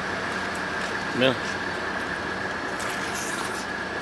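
Steady mechanical hum with a constant high-pitched whine running evenly throughout.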